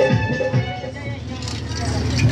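Live music from an electronic keyboard and a hand drum trailing off, its held tones dying away within the first half-second, leaving a lower wash of crowd noise and voices.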